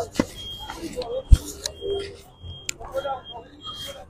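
Short high electronic warning beeps repeating at uneven intervals, among people's voices, with one sharp knock just over a second in.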